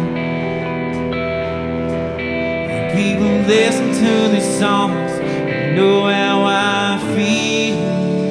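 A country band playing a song live, led by guitar, with held notes and sliding bends in the melody.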